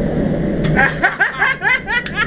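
A person laughing in a quick run of short rising chuckles from just under a second in, over the steady rumble of a moving train heard from inside the carriage.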